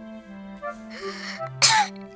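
A little girl sneezing: a breathy intake about a second in, then one short, sharp sneeze near the end. Soft background music with held notes plays under it.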